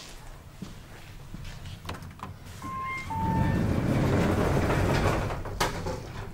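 KONE MonoSpace traction elevator arriving at the landing: a two-note descending arrival chime about three seconds in, then the automatic landing and car doors sliding open, stopping with a knock near the end.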